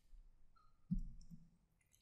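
A few faint clicks and soft taps in near quiet, the clearest a low knock about a second in.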